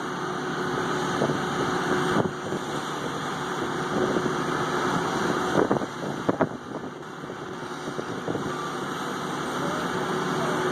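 Backhoe's diesel engine running steadily, with surf washing on the beach; a couple of sharp knocks about six seconds in.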